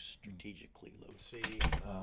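A scatter of light clicks and handling noises, then a man's voice begins about two-thirds of the way through, with a low thud as it starts.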